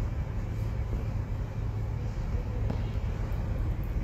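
Steady low hum of background noise, with a few faint ticks.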